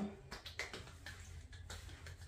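A few faint, sharp hand clicks, snaps or light claps, scattered over a low steady room hum.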